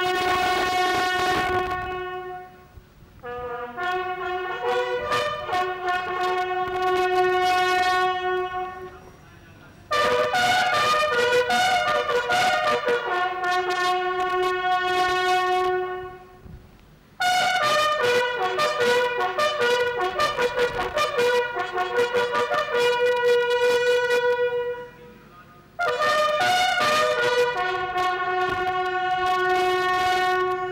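Several military bugles sounding a ceremonial call together. It is played in phrases of long held notes, broken by brief pauses every six to eight seconds.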